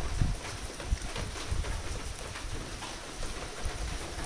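Rain falling steadily, with scattered drops ticking and wind rumbling on the microphone.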